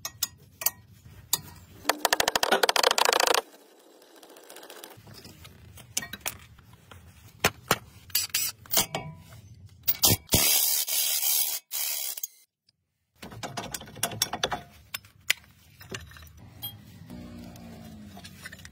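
Cordless impact wrench hammering as it undoes the brake caliper bolts, in two loud bursts about two seconds in and again about ten seconds in. Clicks and knocks of metal brake parts being handled come between them.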